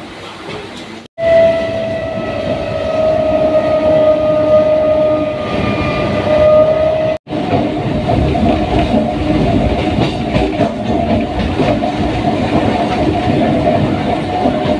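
Train horn sounding one long, steady note for about six seconds, starting about a second in and cut off abruptly. Then the train runs along the track with clickety-clack and a steady whine.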